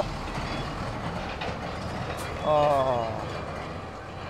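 Steady noise of a road vehicle going past on a dirt road, slowly fading toward the end, with a man's short "oh" about two and a half seconds in.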